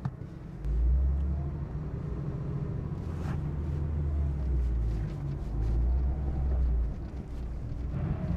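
Porsche 993 GT2's air-cooled twin-turbo flat-six pulling away at low revs, heard from inside the cabin as a deep, steady rumble. The rumble comes up about half a second in and eases off near the end.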